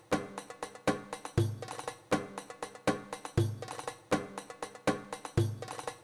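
Drum loop playing from a Korg microSAMPLER sampling keyboard: a steady beat of sharp percussion hits with a deep kick about every two seconds.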